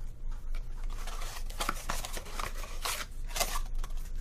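Handling noise: irregular rustling and small clicks as clear plastic packaging boxes and a paper insert are handled.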